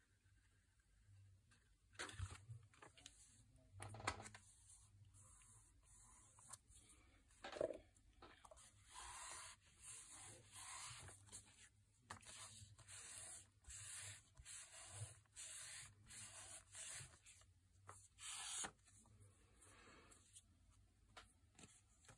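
Faint rubbing and rustling of wax-treated paper as a glued paper pocket is pressed and smoothed by hand. There are a few scrapes in the first seconds, then a run of soft strokes about one a second.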